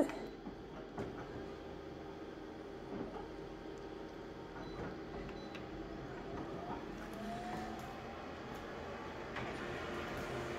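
Office colour copier running a full-colour copy job: a steady machine whir with a few soft clicks, and a rising whine about seven seconds in.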